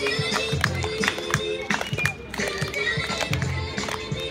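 Music with a steady beat and a singing voice, played for marching dancers.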